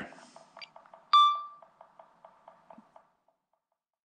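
A single short electronic beep about a second in, over faint quick ticking about five times a second that fades out near the three-second mark.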